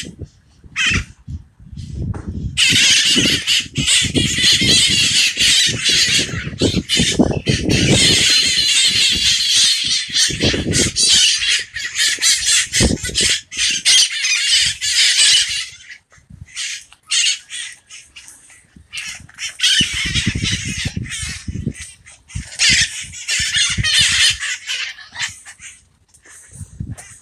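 Birds squawking with harsh, rasping calls, nearly continuous for over ten seconds from a few seconds in, then in shorter broken bouts, with another long run near the end.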